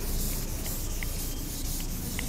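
A board duster rubbing across a chalkboard, erasing chalk writing: a steady scrubbing.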